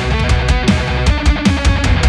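Heavy metal mix: a Balaguer electric guitar playing a riff over drums from the Solemn Tones Mjolnir Drums plugin, with drum hits landing in a fast, steady beat. The drum bus has only light compression and a little clipping.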